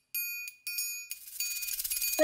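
Opening of a song's musical intro: two bright chime strikes about half a second apart, each ringing briefly, followed by a shimmering swell that grows louder toward the start of the music.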